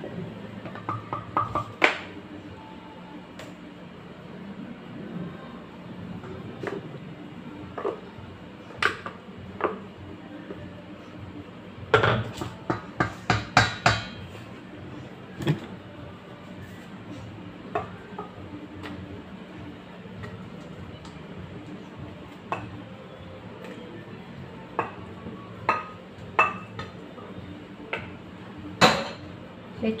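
Wooden spoon scraping and knocking against a glass blender jar and a stainless steel bowl as a thick blended plantain mixture is spooned out. Single knocks come every few seconds, with a quick run of about half a dozen sharp taps about twelve seconds in.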